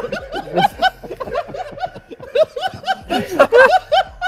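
Several men laughing together in short bursts, loudest about three seconds in.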